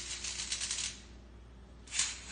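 Stainless steel mesh colander clattering and scraping on a tile floor as a baby pushes it: a quick run of clicks for about the first second, then quiet, then a single knock at the end.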